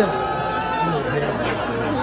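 Studio audience reacting to a joke with drawn-out, overlapping voices: the hissing of disapproval.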